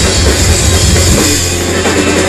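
Live rock band playing loud: a drum kit with cymbals driving under electric guitar and bass.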